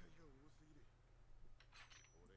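Near silence: a faint, quiet voice in the first half-second, then a brief faint hiss near the end.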